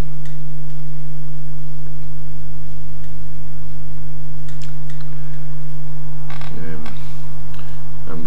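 Loud steady electrical hum on the recording, with a few faint light clicks of thin card being handled and pressed together about halfway through.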